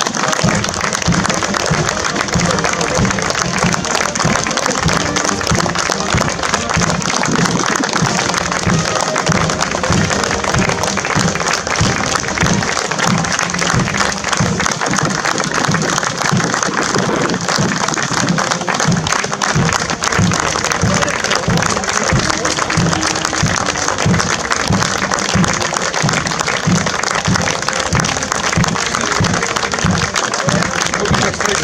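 A crowd applauding steadily and continuously, over music with a steady low beat.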